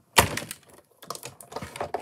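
A die-cutting machine and its plastic cutting plates being handled on a table: one loud knock just after the start, then a run of lighter clattering knocks in the second half.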